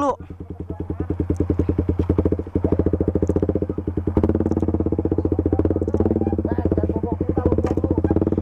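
Motorcycle engine idling with a fast, even pulse, getting louder over the first second or so and then running steadily.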